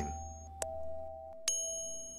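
Sound-designed background tones: a low hum and a steady held tone that cut off about one and a half seconds in, then a single bell-like chime that rings on.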